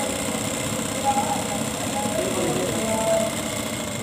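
Single-needle industrial sewing machine stitching fabric at speed: a fast, even chatter of needle strokes over a steady motor whine.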